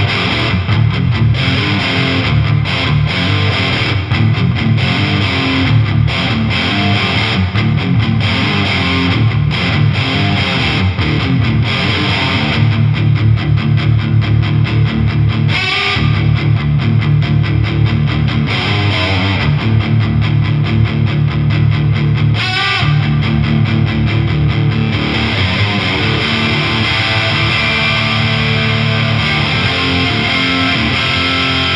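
Gibson Les Paul Standard played through an MXR Classic Distortion pedal set for heavy gain into a Marshall DSL100HR amp: loud, continuously distorted rock chords and riffs, with two brief sliding sounds about halfway and about three-quarters through.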